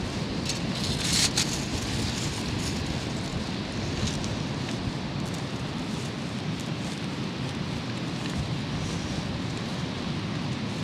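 Strong wind buffeting the microphone, a steady low rumble, with a few short crackles in the first second and a half and again around four seconds in.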